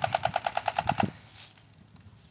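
Toy machine gun's electronic sound effect: a rapid rattle of pitched beeps, about a dozen a second, that cuts off suddenly about a second in.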